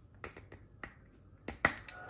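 Short, sharp plastic clicks as the cap is worked off a large refillable Molotow acrylic paint marker: a handful of irregular clicks, the loudest near the end.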